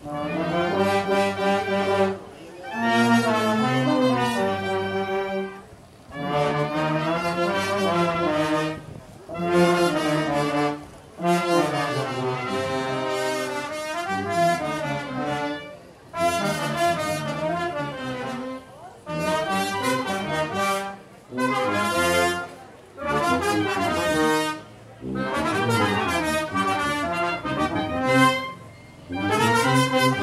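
Brass band music playing in short phrases of a second or two, separated by brief pauses.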